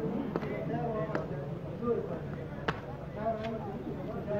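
Faint voices of players and onlookers talking in the background, with three sharp knocks, the loudest nearly three seconds in.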